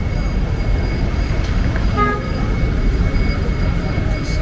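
Street ambience with a heavy low rumble and a thin steady high tone, broken about two seconds in by a short vehicle horn toot.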